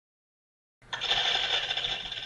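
Split-flap counter sound effect: fast mechanical clattering of flipping flaps that starts just under a second in and stops about a second and a half later.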